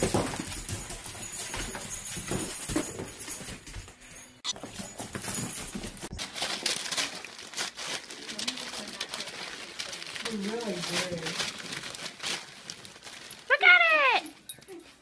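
Gift-wrapping paper rustling and tearing as a dog paws and pulls at presents, in irregular crackly bursts. A loud voice cry comes just before the end.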